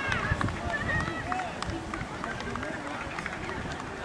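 Scattered distant shouts and calls from football players on the pitch, with a few light thuds.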